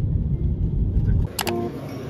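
Low, steady road rumble inside a moving car's cabin, which stops abruptly a little over a second in. A sharp click follows, and then background music with steady notes starts.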